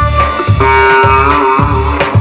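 Sitar melody played over a steady drum beat, with held notes that bend in pitch partway through.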